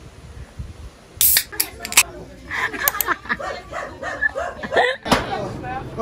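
Indistinct voices talking, with several sharp clicks or knocks between about one and three seconds in, and an abrupt switch to a louder, busier sound near the end.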